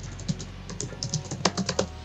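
Computer keyboard typing: a quick, irregular run of keystroke clicks.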